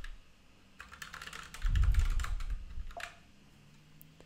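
Typing on a computer keyboard: a run of key clicks between about one and three seconds in, with a low thump in the middle of it.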